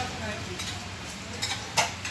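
A hand eating from a stainless-steel thali plate: faint scraping, two light clicks about a second and a half in, and a sharper click near the end as a piece of chapati is dipped into the steel curry bowl.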